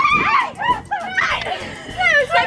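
Excited high-pitched squeals and laughter from children at play, in short overlapping bursts.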